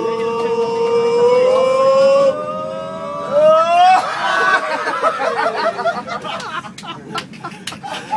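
Young men's voices holding one long drawn-out shout on a single note that slowly rises and sweeps upward at about four seconds. It then breaks into laughter and excited chatter, with scattered knocks and bumps.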